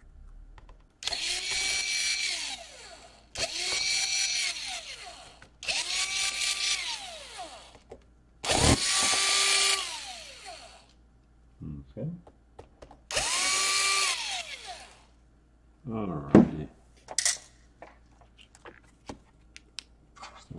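Cordless drill-driver unscrewing the laptop's internal battery screws in five runs of about two seconds each. In each run the motor's whine rises as it spins up, holds steady, and falls away as it stops. A few light clicks and taps from handling the parts follow near the end.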